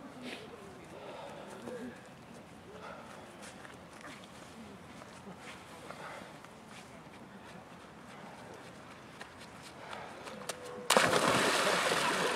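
Faint voices over a quiet background, then about eleven seconds in a person jumps into a hole cut in the ice of a frozen lake: a sudden, loud splash and churning of water.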